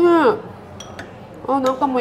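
A metal spoon clinking lightly against a ceramic dessert bowl twice, in a short gap between speech.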